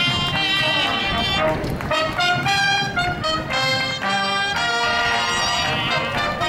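A cobla, the Catalan sardana band of reeds, brass and double bass, playing a lively galop for dancing, with brass prominent in the melody.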